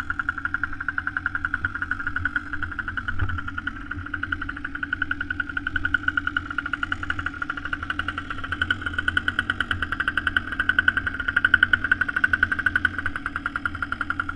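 Small petrol engine of a motor sled converted from a Stiga Snow Racer, idling steadily with fast, even firing pulses.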